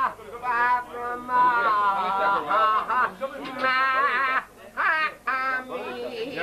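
A man singing with long, wavering held notes and short breaks between phrases.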